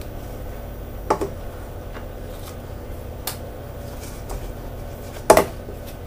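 Kitchen bowl and utensils knocking while batter is handled: a light knock about a second in, a fainter one around three seconds, and a louder clatter near the end, over a low steady hum.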